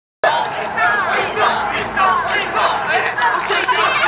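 Crowd of mikoshi bearers shouting together as they carry a portable shrine, many voices calling out at once.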